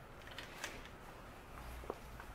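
Faint handling noise: a few light clicks over quiet room tone.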